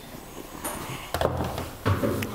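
An aluminium intake manifold assembly being set down and handled on a metal workbench: a few light thunks and knocks, starting about half a second in.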